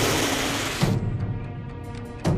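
Dramatic film score with a low drum hit about every second and a half. Over the first second comes a loud hissing whoosh, which stops sharply.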